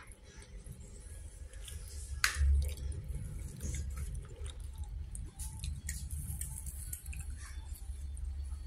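Soft, wet squishing and small clicks of a soft bread bun being eaten and torn by hand close to the microphone, with a sharp click a little over two seconds in. A steady low rumble of handling noise runs underneath.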